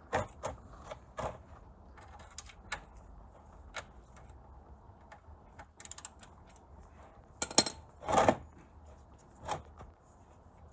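Hand tools clicking and knocking on metal during work on a car engine, in irregular single strikes. About seven and a half seconds in comes a quick cluster of clicks, the loudest moment, followed by a longer clunk.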